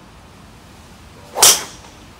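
A golf driver swung and striking a ball once: a quick swish rising into a sharp, loud crack of impact about one and a half seconds in.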